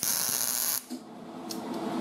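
MIG welder arc on thin auto body sheet steel, laying one stitch-weld pass along a lap joint: a steady hiss that cuts off suddenly under a second in.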